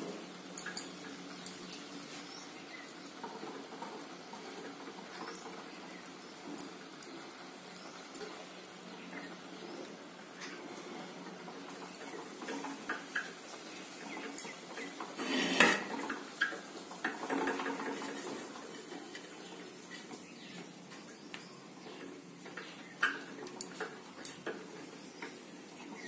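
Quiet handling of an earthenware matka: light taps and scrapes as a dough seal is pressed around its rim, with a louder clay knock about halfway through, likely as the clay lid is set on to seal the pot for dum cooking. A faint steady hum sits underneath.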